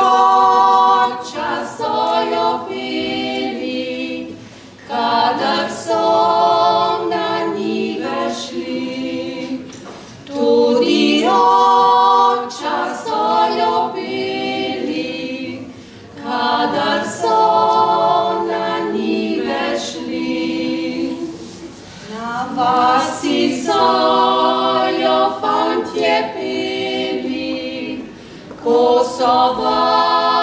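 Three women singing a Slovenian folk song a cappella in close harmony, in phrases of about five to six seconds with brief breath pauses between them.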